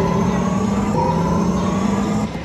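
Video slot machine's electronic game sound: a sustained synthesized tone that slides slowly upward in pitch over a steady low drone, starting over about a second in and gliding up again.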